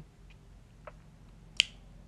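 A single sharp click about one and a half seconds in, with a couple of fainter ticks before it, in a quiet pause between speech.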